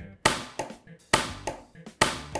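Hand chopping down on a small plastic building-brick Godzilla figure on a tabletop: a run of sharp plastic knocks, the loudest about a quarter second in and just after a second, with lighter taps between. It is a chop test of whether the build holds together.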